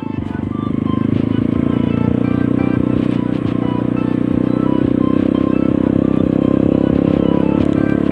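Trail motorcycle engine running steadily while riding at low speed, picking up a little in the first second, with background music playing over it.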